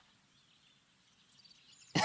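Very quiet outdoor ambience with faint, high bird chirps.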